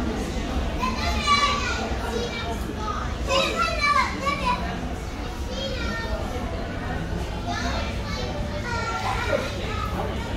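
Children's high voices calling and chattering in bursts, loudest about a second in and again around four seconds in, over a steady low background rumble.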